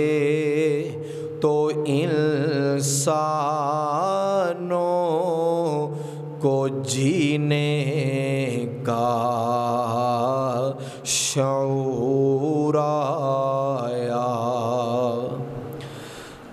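A man singing an Urdu naat, a devotional poem in praise of the Prophet Muhammad, without words being clearly articulated: long drawn-out melismatic notes with a strong vibrato, in several phrases separated by brief breaths.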